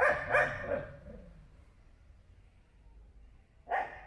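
A dog barking: a short run of barks at the start and a single bark near the end.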